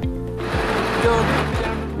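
News background music with a steady low pulse, with a rough, rattling noise added from about half a second in.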